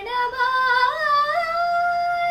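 A woman's solo voice singing a Kannada light-music (sugama sangeetha) melody. It climbs in small sliding steps and settles on a long held high note.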